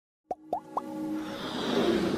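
Intro sting for an animated logo: three quick upward-gliding plops in the first second, then a steadily swelling musical build.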